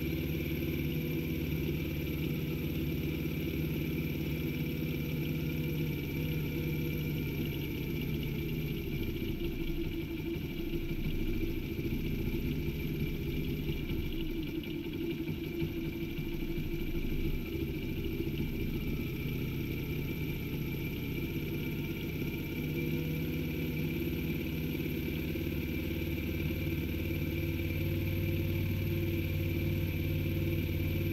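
Honda Gorilla's small single-cylinder four-stroke engine idling while its carburetor's adjusting screw is turned with a screwdriver. The idle wavers for a while in the middle, then settles steady again.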